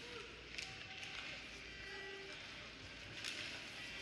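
Ice hockey arena sound during live play: a steady background of crowd murmur and rink noise, with skates on the ice and a few sharp clicks of sticks and puck.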